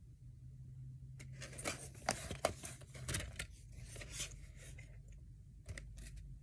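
Plastic DVD snap case being handled as its hinged inner disc tray is turned over: a run of clicks and scraping rustles, then one more click near the end.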